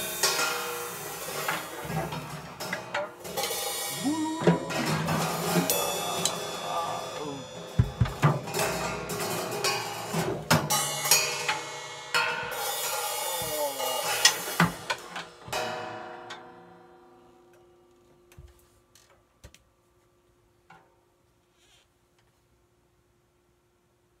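Drum kit played with sticks: fast, busy hits across the drums and cymbals for about fifteen seconds, then the playing stops and the ringing dies away, with a few soft taps near the end.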